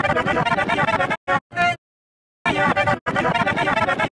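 Distorted, effect-processed Oreo TV commercial audio played back fast, in a dense, choppy stutter of pitched music. It breaks up near the middle and drops to dead silence for about half a second before resuming.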